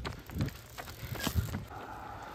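Small children's bicycle rolling along a tarmac lane, with scattered light clicks and knocks.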